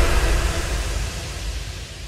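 Hiss and low rumble dying away steadily: the tail of the final impact hit that ends an electronic music track.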